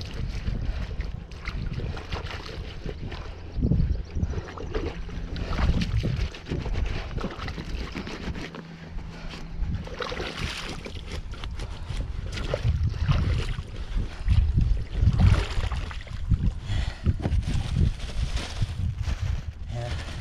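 Hands splashing and swishing in shallow river water beside a kayak as muddy hands are rinsed, in irregular bursts, with wind buffeting the microphone.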